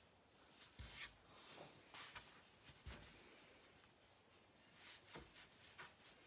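Faint, intermittent scratching and rustling of drawing on paper: a handful of short strokes, with a cluster near the end, in a quiet small room.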